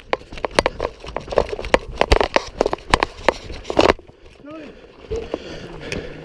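Rifles firing simulation rounds in rapid, uneven shots for about four seconds, then the firing stops. Shouted voices follow.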